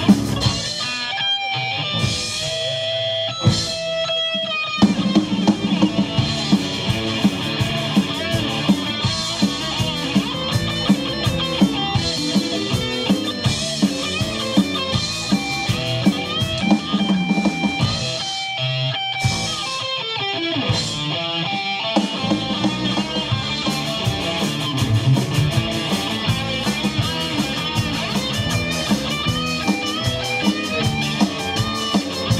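Live rock band playing: electric guitars, electric bass and drum kit. The band stops briefly a couple of times in the first five seconds and again around twenty seconds in before coming back in.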